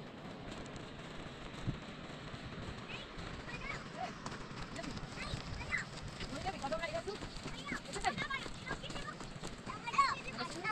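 Small children's high voices calling out in short scattered cries, growing more frequent from about three seconds in, over a steady rushing noise and footsteps on stony ground.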